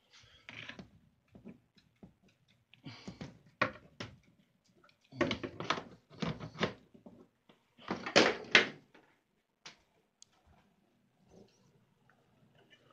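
Cat litter scraped and pushed around by hand in a plastic litter box to cover an uncovered cat poop, in several short rough bursts with pauses between, the loudest a little past the middle.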